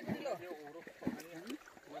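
Women's voices talking quietly, with no clear splashing or other sound.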